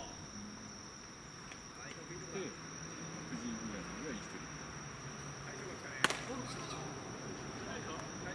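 Insects keep up a steady high trill at a night ball field, with faint distant voices. About six seconds in, a single sharp crack of a pitched baseball.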